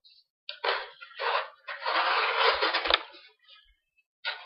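Pocket knife blade slicing through cardboard in three scraping strokes, the last and longest lasting over a second and ending in two light knocks.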